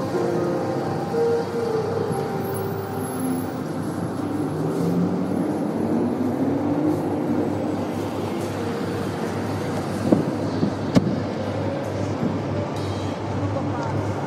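Street traffic noise, steady throughout, with two sharp knocks about ten and eleven seconds in.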